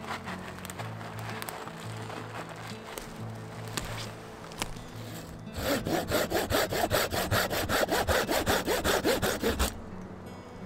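Dry twigs crackling with a few sharp snaps as they are handled. Then a folding saw cuts a dead, moss-covered branch stub in quick, even strokes, several a second, for about four seconds, and stops just before the end as it cuts through.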